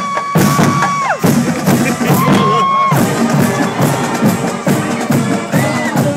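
High school marching band playing on the march: Pearl marching bass drums and percussion keep a steady beat under the brass, with sousaphones on the low part. Long held high notes sound, one ending about a second in and another from about two to three seconds in.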